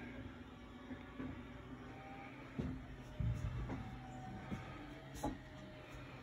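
Scattered soft knocks and bumps over a low steady hum inside a motorhome cabin, typical of a handheld phone being moved and footsteps while walking through.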